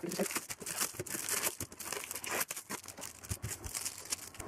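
Shiny foil trading-card packets being peeled off a cardboard backboard held with double-sided tape and handled: irregular crinkling and rustling of the wrappers, with small clicks and taps.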